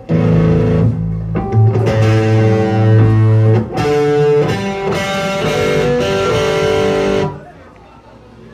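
Live punk band with loud distorted electric guitars and bass playing a short run of held chords, starting abruptly and breaking off about seven seconds in.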